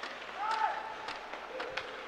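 Faint ice hockey play in a quiet rink: scattered clicks of sticks and skates on the ice, with a brief distant voice calling out about half a second in.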